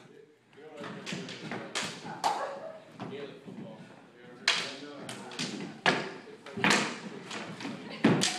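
Irregular knocks and thuds of a longsword sparring bout, a dozen or so sharp strikes at uneven intervals as blades meet and feet hit the floor, with faint breath or voice sounds between them.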